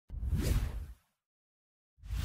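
A whoosh sound effect for an animated intro, about a second long with a deep rumble under a bright rush, then silence; a second whoosh begins right at the end.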